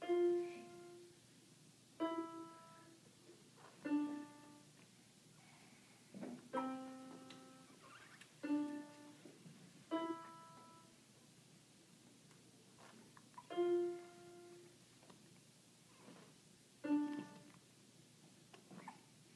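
Portable electronic keyboard in a piano voice, played by a beginner one note at a time: about nine single notes, slow and uneven, each ringing and fading before the next comes one and a half to three and a half seconds later.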